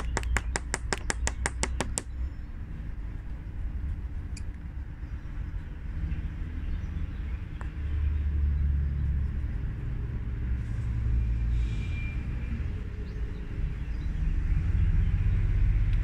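A low outdoor rumble that swells and fades twice. It opens with a fast, even run of sharp clicks, about five a second, that stops about two seconds in.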